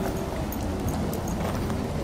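Several dogs' claws clicking and paws pattering irregularly on a wooden deck as they play and run around.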